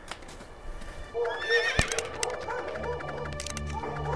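A horse whinnies once, a wavering high call about a second in. Background music with sustained notes swells in under it and carries on.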